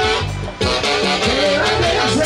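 Live band playing loud Latin dance music with a steady beat. The sound dips briefly about half a second in, then comes straight back.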